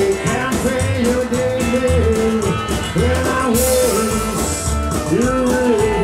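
Live rock-and-roll band playing: a harmonica lead with bent notes, repeating a short phrase, over upright bass and drums. A cymbal crash comes a little past the middle.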